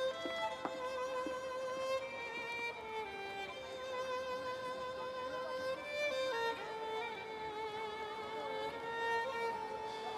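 Background music: a violin playing a slow melody of long held notes that step from pitch to pitch.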